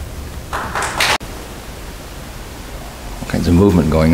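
Steady hiss of room tone. There is a short rush of noise about half a second in that cuts off abruptly, and a man starts speaking near the end.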